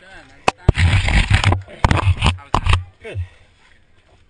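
Loud rustling and scraping of climbing harness gear being handled close to the microphone, with two sharp clicks about half a second in, as a gloved hand works at the chest karabiner.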